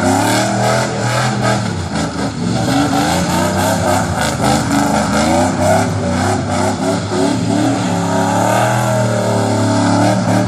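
Chevrolet short-box pickup's engine revving hard during a burnout, its pitch rising and falling again and again, over the noisy hiss of the rear tyres spinning on the pavement.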